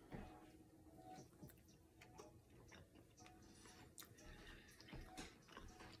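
Near silence with faint, irregular clicks and small mouth sounds of someone eating: a utensil touching a plate and chewing.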